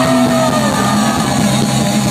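Live rock band playing loudly with electric guitar, recorded from among the audience; one note bends up and back down in the first half second.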